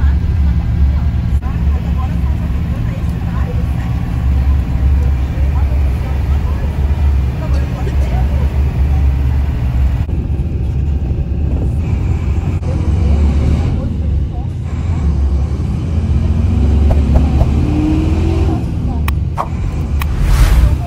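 Inside an intercity coach bus on the move: a steady low rumble of engine and road noise, with a whine rising in pitch in the last few seconds.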